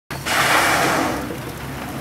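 Blue whale's blow: a whooshing exhalation that starts suddenly and fades over about a second, over the low steady hum of the boat's engine.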